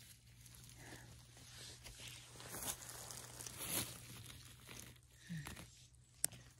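Faint, intermittent rustling and crunching of dry grass and pine litter as the ground is handled close to the microphone, over a faint steady low hum.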